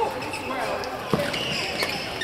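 Badminton hall ambience: indistinct voices with a few sharp knocks and high squeaks, one knock just past the middle.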